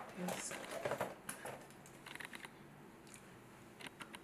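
A soft voice murmurs briefly in the first second or so. A few faint clicks and taps follow from a lipstick and other makeup being handled.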